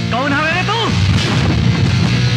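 A man's loud cry that climbs in pitch for nearly a second and then drops away. About a second in comes a heavy boom, over rock background music.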